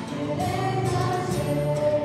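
A small live band playing a song: a girl singing held notes over strummed acoustic guitar, electric bass guitar and a drum kit.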